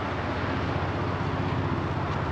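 A steady low outdoor rumble with a fast, uneven flutter in the bass.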